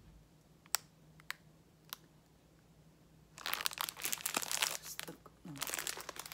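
Clear plastic wrapping of a pack of baseball cards crinkling as it is handled. A few sharp clicks in the first two seconds, then a dense, loud crinkling for the last two and a half seconds.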